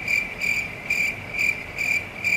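Cricket chirping, a high-pitched chirp repeating about twice a second that starts and stops abruptly: the comic 'crickets' sound effect marking an awkward silence.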